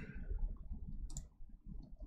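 A computer mouse clicks once, sharply, a little over a second in, with a fainter tick near the end, over a low room hum.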